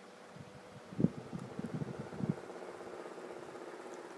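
A steady mechanical hum, with a cluster of soft low thumps about a second in, the first of them the sharpest.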